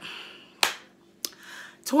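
Two sharp clicks made by a person during a pause in talking: a louder one about half a second in, then a softer one a little over half a second later.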